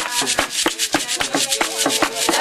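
Hand rattles shaken in a fast, steady beat, with hand clapping, under faint group singing.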